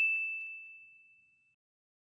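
A single bright ding, a notification-chime sound effect for a subscribe button, ringing out and fading away over about the first second and a half.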